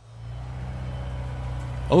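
Low, steady engine idle that fades in over the first half second.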